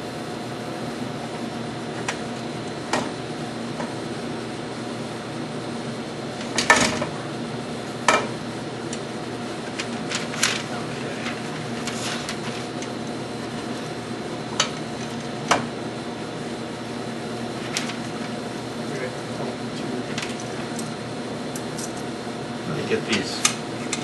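Scattered light metallic clicks and knocks from handling the bolts and bracket of a wall-mounted laser, the loudest about seven seconds in, over a steady room hum.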